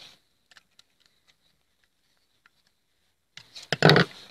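Hands handling a plastic pump pressure switch and the cable wires being fed into its terminals: a few light clicks and ticks, then a loud burst of clicking and rustling near the end.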